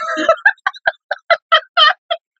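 A woman laughing hard: a quick run of short bursts of laughter, several a second, that stops just before two seconds in.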